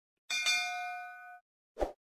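Notification-bell chime sound effect: a bright ding of several ringing tones a quarter-second in, fading away over about a second. Near the end comes a short soft pop.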